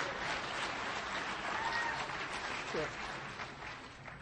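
Audience applause, a dense patter of clapping that dies away near the end.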